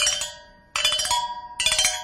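A small handheld bar percussion instrument struck with a thin stick. It plays three separate notes of different pitch, each ringing on with a bell-like tone: one right at the start, one about three-quarters of a second in, and one about a second and a half in.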